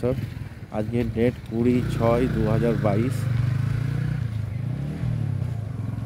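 A motorcycle engine running close by, a steady low hum that dips in pitch briefly about five seconds in. A person talks over it for the first few seconds.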